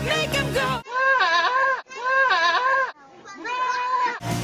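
Pop music cuts off after a moment and a goat bleats three times in a row, each call about a second long with a wavering, human-like pitch.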